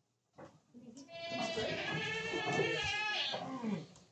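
A goat giving one long, wavering bleat of about two seconds, starting about a second in.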